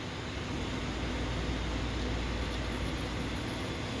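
Steady background hiss with a faint low hum, like room noise from an air conditioner or fan; no separate servo movement stands out.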